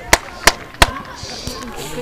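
Hands clapping in an even rhythm, about three claps a second, with the last clap a little under a second in. Faint talking follows.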